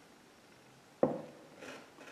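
A potted plant set down on a wooden tabletop: one sharp knock about a second in, then a fainter short rustle as it is settled in place.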